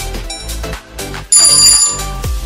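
Background electronic dance music with a steady beat about twice a second; about a second and a half in, the music drops out and a short, loud bell-like ringing sound effect sounds, signalling that the quiz timer has run out.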